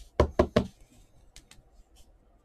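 Three quick knocks of hands striking a tabletop, about a fifth of a second apart, followed by a couple of faint ticks of card handling.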